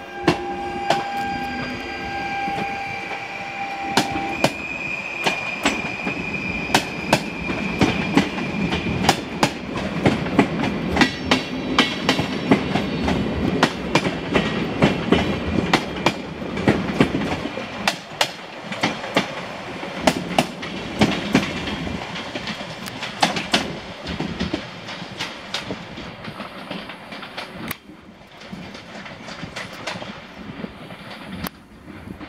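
Stadler Flirt electric multiple unit rolling through the station, its wheels clicking rapidly and unevenly over rail joints and points. A steady high whine sounds through the first few seconds, and the clatter thins out near the end.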